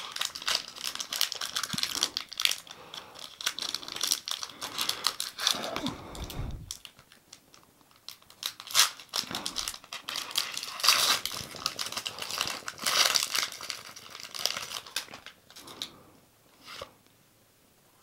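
Foil trading-card booster pack crinkling and tearing as it is opened by hand, in two long spells of crackling with a short pause about seven seconds in and a quieter stretch near the end.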